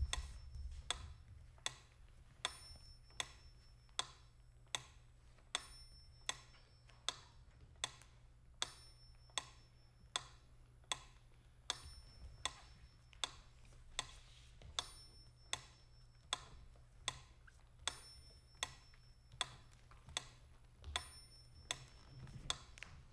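Clock-like ticking at a steady, even pace, about four ticks every three seconds, over a low steady hum.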